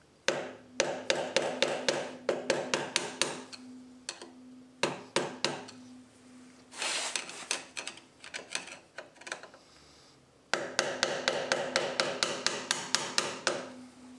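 Light, rapid taps of a small hammer on a screwdriver, bending back the metal locking tabs on the oil passageway pipe bolts of a motorcycle crankcase. The taps come in runs of several a second, with a long pause in the middle before a final run.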